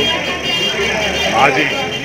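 A man speaking, his statement to reporters running on without pause; no other sound stands out.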